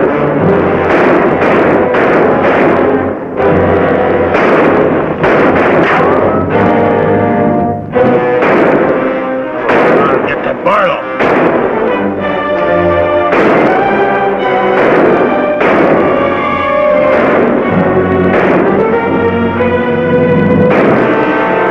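Dramatic orchestral film score with brass, over a gunfight, with sharp gunshots cracking repeatedly, roughly one a second.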